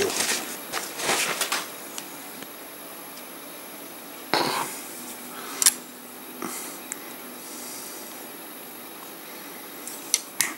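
Handling of a plastic flip-top paint pot: soft knocks and rustling in the first second or two, then a louder brief knock and a sharp click near the middle as the lid is opened, with quiet room tone between.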